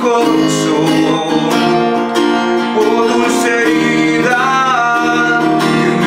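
Guitar music: an acoustic-electric guitar with a capo playing a slow song's chords and melody, steady throughout.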